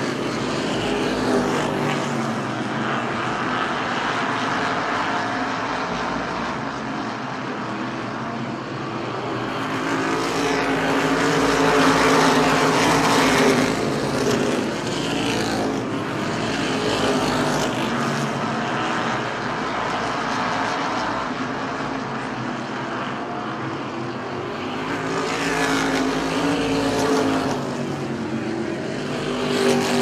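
A field of race car engines running laps on a short oval. The sound swells twice, about a second before the halfway point and again near the end, as the pack comes past.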